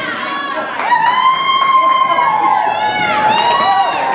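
Several people whooping and cheering with long, high-pitched calls that rise and fall, overlapping, louder from about a second in.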